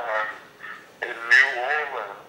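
A man's voice coming thin and nasal through a small phone speaker, in two drawn-out, wavering vocal sounds without clear words, the longer one starting about a second in.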